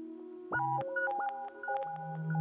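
Modular synthesizer music: a quiet held tone, then about half a second in a quick run of beeping electronic tones that step between pitches, several sounding together.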